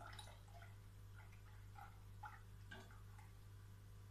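Faint, irregular soft plops and drips of lben (fermented milk) being poured from a container into a pot of hot milk to curdle it for cheese, over a steady low hum.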